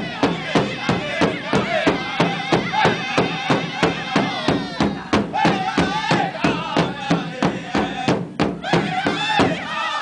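Powwow drum group: several men and women singing together over one large shared drum, struck in unison by several drummers at a steady beat of about three strokes a second.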